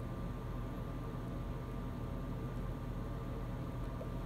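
Steady low hum and hiss of room tone, with no distinct sounds standing out.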